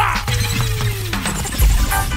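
Dance-hall music at a track change in a DJ mix: a sudden crash-like effect hits at the start, then a tone slides downward over about a second over a steady bass beat before the next tune's keys come in near the end.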